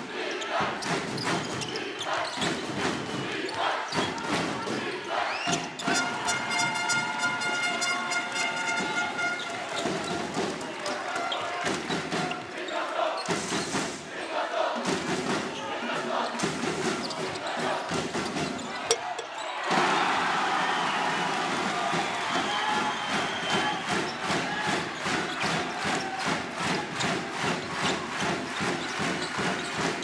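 Basketball being dribbled on a hardwood court amid steady arena crowd noise. About two-thirds of the way in, the crowd swells suddenly into louder cheering.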